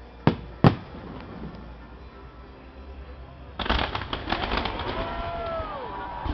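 Fireworks display: two sharp shell bursts in the first second, then from about three and a half seconds a dense run of crackling snaps lasting about two seconds.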